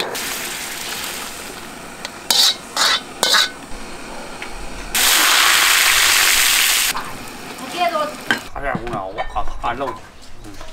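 A steel ladle clinks and scrapes in an iron wok of simmering broth. About five seconds in comes a loud, even sizzle lasting about two seconds: hot oil poured over the chili, scallion and garlic topping of Sichuan boiled beef.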